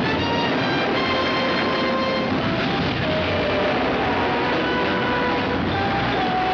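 Film soundtrack: orchestral music with long held notes that shift pitch every second or so, over a dense, steady wash of battle noise.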